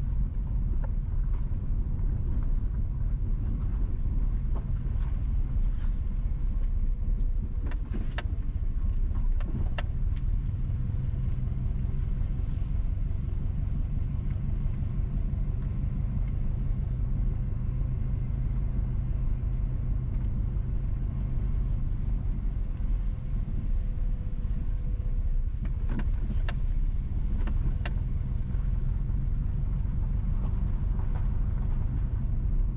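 Car driving slowly, a steady low rumble of engine and tyres on the road, with a few brief sharp knocks about eight to ten seconds in and twice more near the end.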